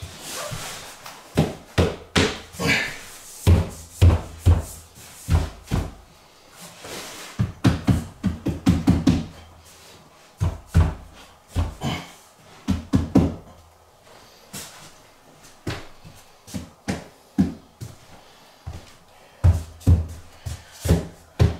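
Sharp wooden knocks, some single and some in quick runs of several, as a wooden baseboard is tapped into place at the foot of the wall.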